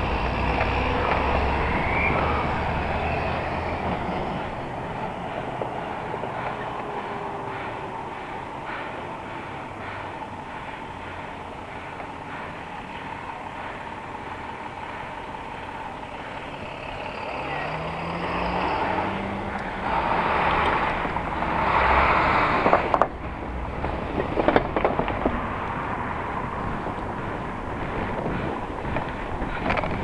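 City street traffic passing a moving bicycle: motor-vehicle engines and tyre noise, with an engine's pitch rising and falling a little past halfway and louder passes around twenty seconds in.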